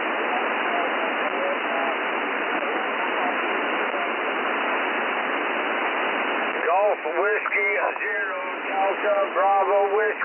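Loud, even hiss of local interference on a 40 m single-sideband amateur-radio receiver, with a weak voice barely showing beneath it; an operator puts the noise down to power lines. About seven seconds in the hiss stops and a clear single-sideband voice takes over.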